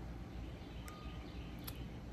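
Quiet outdoor background: a steady low rumble with a couple of faint clicks and a brief faint chirp about a second in.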